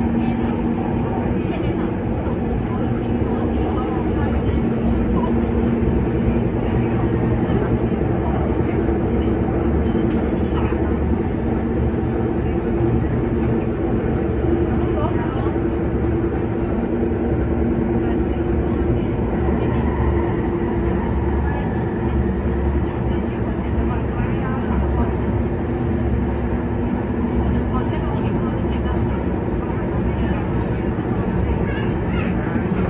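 Kinki Sharyo–Kawasaki-built electric multiple unit train running at steady speed, heard from inside a passenger car: a continuous rumble of wheels on rail with a steady hum from the running gear.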